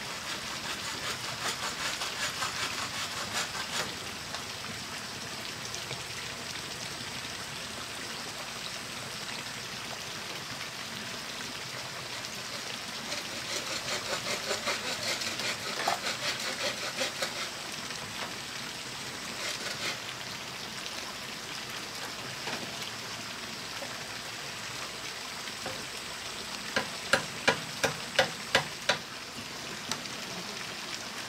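Bamboo being worked by hand on a pole platform: stretches of quick rhythmic scraping and tapping over a steady hiss, then six sharp knocks in quick succession near the end.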